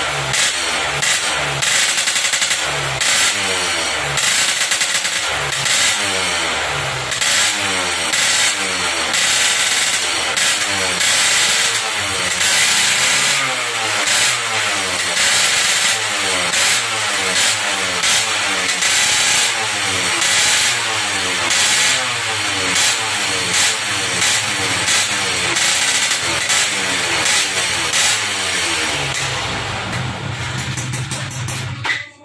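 Two-stroke Yamaha F1ZR motorcycle engine through an aftermarket racing exhaust, its throttle blipped over and over, with the pitch rising and falling about once a second.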